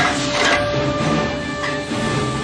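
Dramatic orchestral film score with held notes, over a steady rushing noise.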